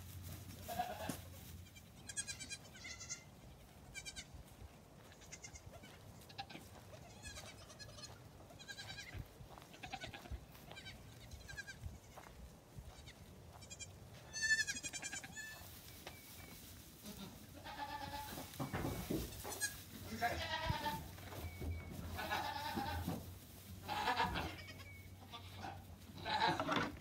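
Goat kids bleating again and again. The first half holds short, high, quavering calls. In the second half the bleats come lower and louder, and the loudest call falls about halfway through.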